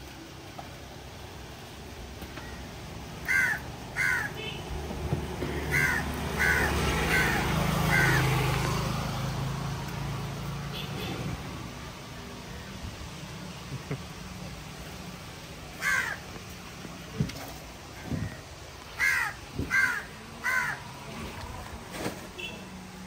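Crows cawing in short runs: two caws, then four in a row, a single caw, and three more near the end. A low rumble swells and fades through the middle.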